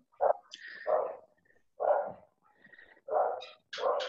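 A dog barking, about five short barks spaced roughly a second apart.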